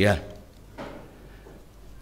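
A page of a Bible turned on a wooden pulpit lectern, heard as one brief soft rustle just under a second in, during a pause in a sermon.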